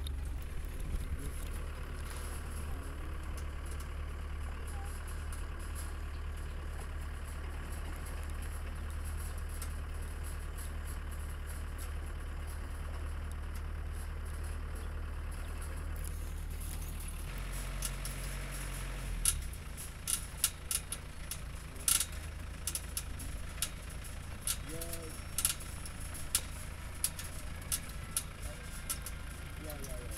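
Open vehicle driving: a steady low engine rumble whose note changes about two-thirds of the way through, after which it keeps running with frequent knocks and rattles from bouncing over a rough dirt track.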